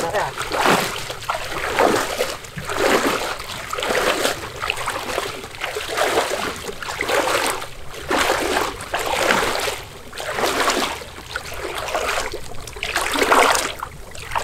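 Water splashing and sloshing in repeated surges, about one a second, as a person wades chest-deep through floodwater pushing a small boat.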